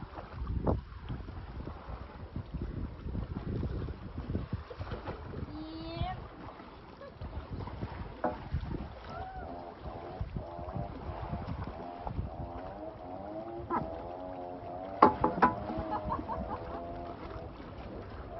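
Several people's voices talking and calling out over constant rumbling background noise from wind and water. The voices grow busier in the second half, with a couple of sharp, louder calls.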